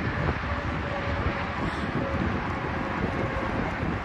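Wind on a handheld microphone outdoors: a steady rushing noise with a fluttering low rumble.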